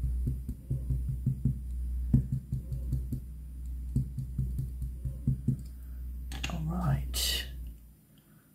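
A small ink pad being patted rapidly and lightly against a clear stamp on an acrylic block to ink it. It makes a run of soft, quick taps, several a second, over a low steady hum.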